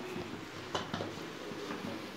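A few faint metallic clicks, about three-quarters of a second and a second in, as the aluminium lid of a pressure cooker is fitted and closed, over a faint low hum.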